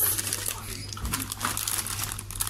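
Clear plastic bags crinkling as wrapped shop goods are rummaged through and handled in a cardboard box, over a steady low hum.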